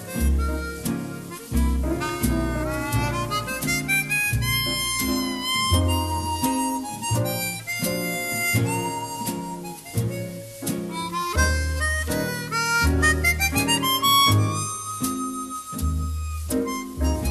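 Chromatic harmonica playing a swing jazz melody, with quick upward runs and a long held high note near the end. Upright double bass, guitar, piano and drums accompany it.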